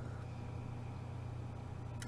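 Quiet room tone: a steady low electrical hum with faint background hiss.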